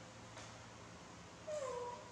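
A baby macaque gives one short complaining call about one and a half seconds in, a brief cry that slides down in pitch, as it waits impatiently to be given food. A faint click comes earlier.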